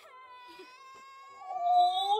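A woman's high, drawn-out whimper of sympathy, quiet at first and swelling much louder near the end.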